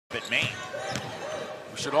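A basketball is dribbled on a hardwood court during live play, with one sharp bounce standing out about a second in. A short high squeak comes near the start, and faint voices carry through the hall.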